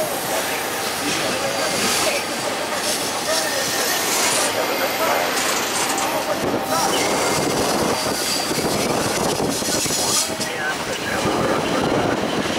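Double-stack intermodal freight train passing: the steady running noise of its container-laden well cars rolling over the rails, with no break.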